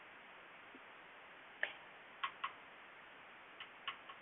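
A few faint, sharp clicks and taps from handling a makeup brush and makeup, coming in two pairs or threes over the second half, against low room hiss.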